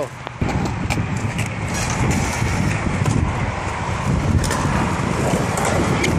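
Skateboard wheels rolling on concrete: a steady low rumble, with a couple of sharp clacks.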